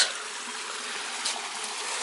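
Small stream of water coming off the hills, running with a steady trickling rush.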